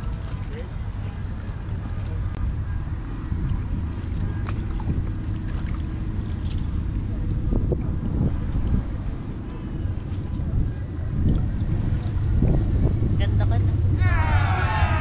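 Wind buffeting the microphone outdoors: a steady, uneven low rumble, with a few faint clicks.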